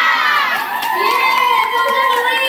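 A cheer squad of young voices shouting a cheer together, with one long drawn-out call from about half a second in.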